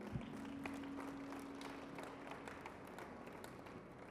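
Faint, scattered hand claps and taps in a large hall, over a held low tone that stops about halfway through.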